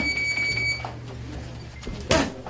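An electronic boxing-gym round timer beeping once, a single high steady tone held for about a second that stops abruptly. A punch smacks into a focus mitt at the very start.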